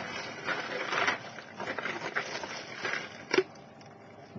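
Plastic Lego baseplates being handled and shuffled: scattered rustling and scraping, with one sharp click a little before the end.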